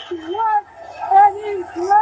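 A high-pitched voice making excited, wordless exclamations: several short rising and falling calls with brief gaps between them.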